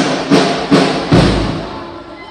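Brass band's percussion playing a run of loud, evenly spaced bass drum and cymbal strikes, about two and a half a second, the last and deepest just over a second in, then ringing away.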